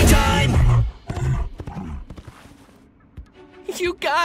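Cartoon soundtrack: a loud rock-style song with singing ends abruptly about a second in, followed by quieter scattered sound effects that fade away before a voice starts near the end.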